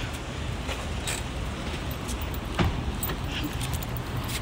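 Low, steady rumble of road traffic along a street, with a few light clicks and taps scattered through it.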